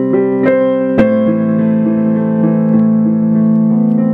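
Digital piano playing slow held chords with melody notes on top; a new chord is struck firmly about a second in and rings on.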